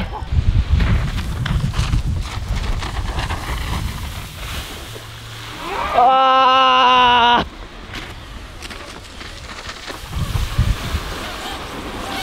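Wind rumbling on the microphone over the water, and about six seconds in a person's long held shout at one steady pitch, lasting about a second and a half.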